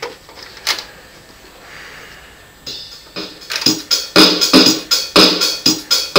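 Home electronic keyboard. After a quiet start with a single knock, it begins a little under three seconds in with evenly spaced, pitched hits, about two a second, that grow louder.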